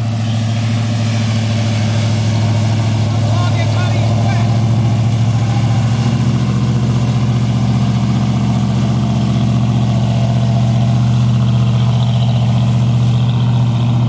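Engine of a full-track swamp buggy running as the buggy drives, a steady low drone that stays even throughout.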